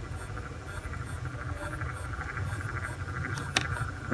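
Low, uneven background rumble with a single sharp click about three and a half seconds in.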